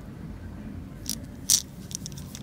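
Gloved hands handling a hard plastic lipless crankbait: a few short crisp crackles, the loudest about one and a half seconds in, over a low steady hum.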